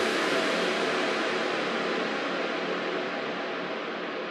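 An even, steady hiss of noise that slowly fades and grows duller, left behind when the backing music cuts off at the start.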